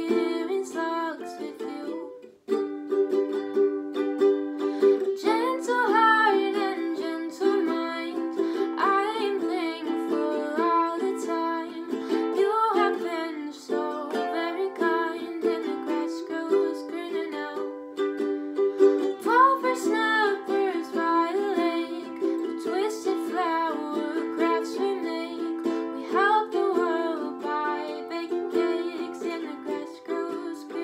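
A girl singing to her own strummed ukulele, which keeps up steady chords throughout. The strumming breaks off briefly about two seconds in.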